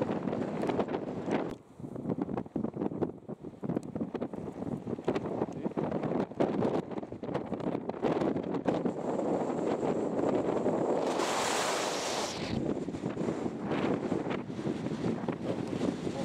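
Strong wind buffeting the camera microphone in uneven gusts, with a louder, hissier gust about eleven seconds in.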